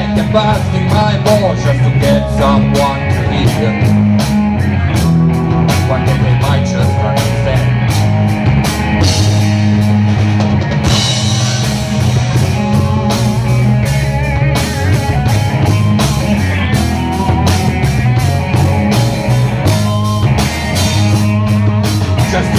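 Live rock band playing with electric guitars and a drum kit, with a steady beat and no vocals.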